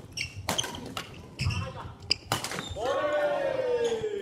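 Badminton play on a wooden gym floor: sharp racket-on-shuttlecock hits and thuds and squeaks of shoes in the first couple of seconds. Then a long, drawn-out shout that slowly falls in pitch as the rally ends.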